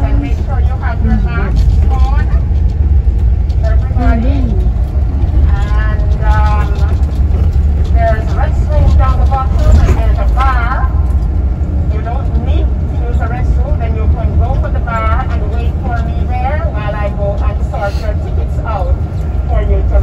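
Steady low rumble of a moving tour vehicle heard from inside the cabin, with indistinct voices talking over it throughout.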